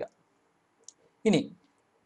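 Near quiet pause with a single brief, faint click about a second in, followed by one short spoken word.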